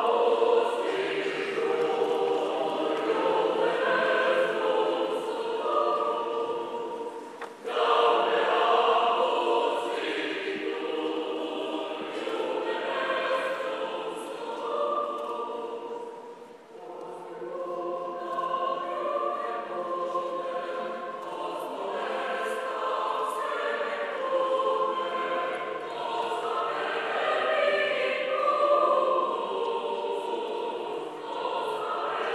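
Choir singing in sustained phrases, with short breaks between phrases about seven and a half and sixteen and a half seconds in.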